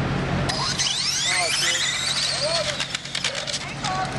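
A 1/10-scale electric RC drag car launching and accelerating down the strip. Its motor whine starts about half a second in, rises steeply in pitch, then arcs over and tails off as the car pulls away.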